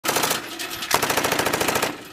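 Automatic-gunfire sound effect: two very rapid bursts of shots, the second and louder one starting about a second in.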